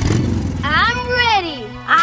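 A brief low rumbling engine-like sound, then a drawn-out voice whose pitch rises and falls.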